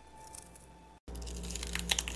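A hand squeezing a fistful of wet, snow-like white granules, which crunch and crackle. It is faint at first, then louder from about halfway through, with a few sharp crackles.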